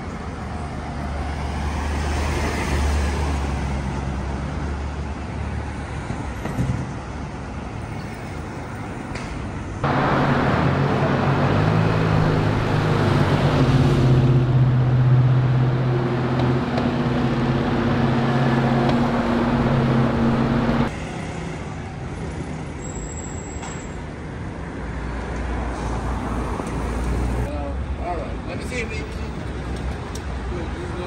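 City street traffic: vehicles passing and engines running. Through the middle stretch a vehicle engine hums steadily at one pitch, then cuts off suddenly.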